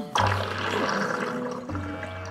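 A sudden rush of water starts just after the beginning and runs for about a second and a half, over background cartoon music.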